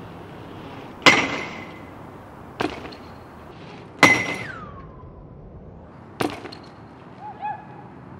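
BMX bike hitting a hollow metal light pole used as a pole jam ramp: four sharp metallic hits. The two loudest ring on with a clear metal tone, and the second ring slides down in pitch as it dies away.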